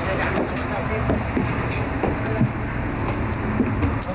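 Inside a double-decker bus: the engine running as a steady low rumble, with scattered rattles and knocks from the bodywork and fittings.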